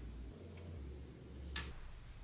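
A light click about three-quarters of the way in, with a fainter tick earlier, as small steel grease-gun parts are handled on a wooden workbench, over a low steady hum.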